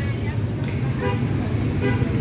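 Steady low rumble of road traffic along a city street, with faint voices of people nearby.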